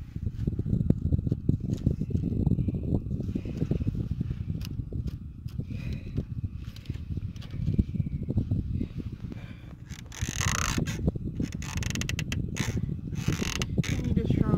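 Irwin Quick-Grip bar clamp being tightened on stacked lumber, its trigger handle squeezed over and over with ratcheting clicks and scrapes. Brighter scraping bursts come near the end, over a continuous low rumble.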